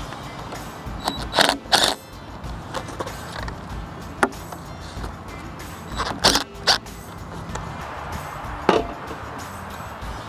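Cordless ratchet with a 13 mm socket loosening the bolts on an excavator's pattern-control plates, in short runs: two near a second and a half in and two more near six and a half seconds in, with sharper single clicks between. Background music plays underneath.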